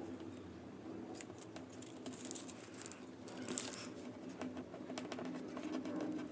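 Copper tape being laid and pressed onto a paper card with the fingers: soft rustling, crinkling and small scratches of fingertips on tape and paper, with a few brief louder rustles.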